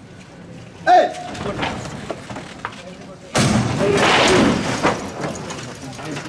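A man's loud shout about a second in, then a sudden loud rush of noise with voices mixed in, about three seconds in, that lasts over a second and fades: costaleros raising the rehearsal float on the capataz's call for the first lift.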